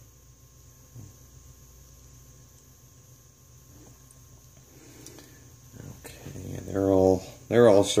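Faint steady room noise with a thin high-pitched hiss, then a man speaking near the end.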